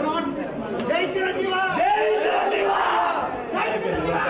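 A packed crowd of men shouting and calling out over each other, with several drawn-out shouts near the middle.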